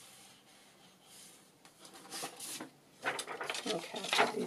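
Paper and card rustling and sliding as sheets of journal cards are shuffled and lifted, faint at first and louder and more crackly from about three seconds in.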